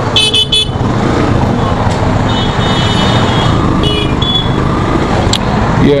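Yamaha FZ-V3's single-cylinder engine running at low speed in slow traffic, under a steady rumble, while vehicle horns toot several times: a quick run of short toots at the start, a longer honk around the middle and two short toots soon after.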